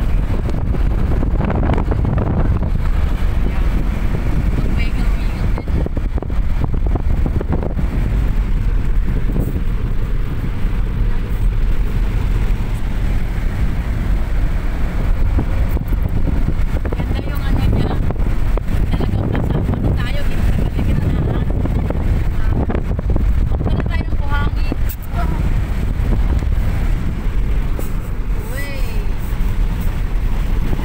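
Two-wheel-drive car driving over soft desert sand dunes: a steady low rumble of engine, tyres and wind.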